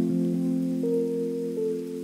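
Slow lofi ballad instrumental passage: soft held chords with a new note coming in about every half second to second, and no singing.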